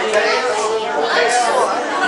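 Several people talking at once: overlapping chatter in a room, with no instruments playing.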